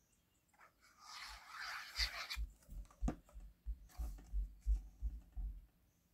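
Hands gluing and pressing paper circles together: a soft rustle of paper about a second in, then a run of light taps and thumps as the card pieces are handled and pressed down onto the craft mat.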